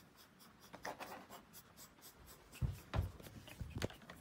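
Handling noise from the phone recording it: faint rubbing and scratching, then a few dull bumps in the second half as it is moved.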